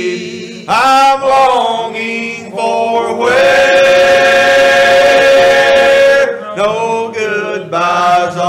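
A male vocal group singing a gospel song together, with a long held note in the middle of the phrase.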